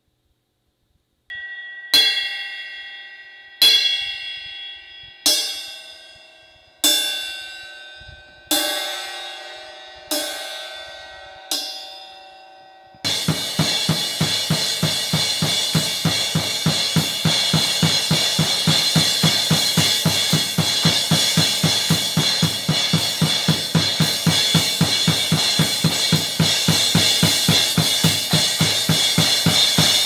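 A 17-inch Zildjian A Thin Crash cymbal struck seven times, about a second and a half apart, each crash left to ring and fade. From about 13 s in it is played continuously in a fast, steady beat over the drum kit, the cymbal wash never dying away.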